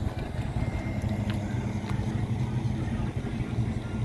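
A vehicle engine idling: a low, steady rumble, with a few faint clicks over it.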